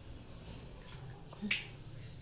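A sharp click of plastic toy building blocks knocking together about a second and a half in, with a smaller tick just before it, over a faint low hum.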